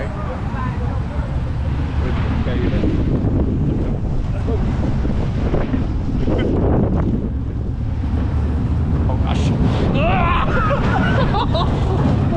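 Wind buffeting an on-ride camera's microphone over the steady low rumble of an SBF Visa spinning coaster car running along its track. Riders laugh and exclaim near the end.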